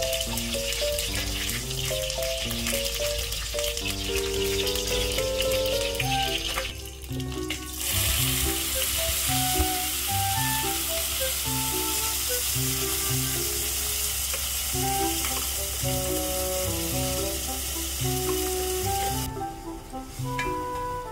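Oil sizzling in a pot as whole spices and curry leaves fry and are stirred with a spatula, over background music with a steady beat. The sizzling breaks off briefly about seven seconds in, then comes back stronger while a paste fries in the oil, and fades about a second before the end.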